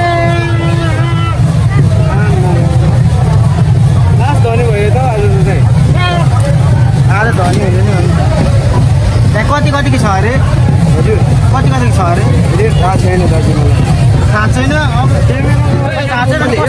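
Loud crowd babble: many voices talking over one another at once, over a heavy, steady low rumble.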